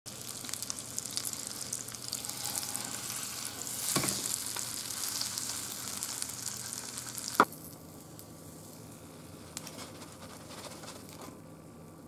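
French toast frying in melted butter in a nonstick pan, a dense crackling sizzle that surges about four seconds in as the slice is turned over onto its wet side. A sharp clack comes a little past halfway, after which the sizzling is much quieter.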